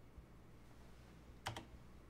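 Two quick, sharp clicks from a computer keyboard about a second and a half in, after a faint tap near the start, against quiet room tone.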